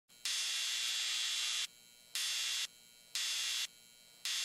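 Bursts of hiss-like electronic static from a studio logo sound effect: one long burst of about a second and a half, then two short bursts about a second apart, each starting and stopping abruptly.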